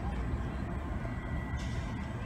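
Steady open-air background noise dominated by a low rumble, with a brief hiss near the end.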